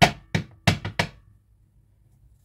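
A tarot card deck being handled and shuffled in the hands, giving about five sharp taps in the first second.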